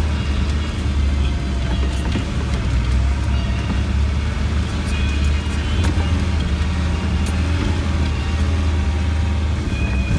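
Land Rover Defender 90 driving along a wet, rutted track, heard from inside the cab: a steady low engine and drivetrain drone with tyre noise and scattered knocks and rattles from the body.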